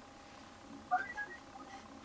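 A quiet pause on a video-call line, with only a brief faint voice about a second in.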